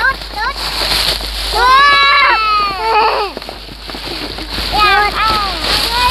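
Thin black plastic bag crinkling and rustling as it is torn off a cardboard toy box, with high-pitched voices calling out several times over it.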